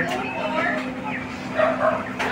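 A caged dog giving a few short, high whines.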